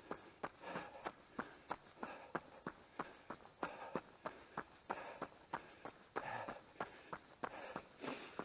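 A runner's footsteps on a tarmac road, an even stride of about three footfalls a second at a steady pace, with his breathing heard between them.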